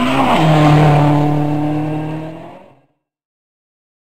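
Rally car engine passing at full revs on a gravel stage: the engine note drops as it goes by, then holds steady as the car draws away, fading out about two and a half seconds in.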